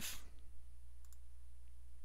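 Computer mouse clicking faintly, the clearest click about a second in, over a steady low electrical hum.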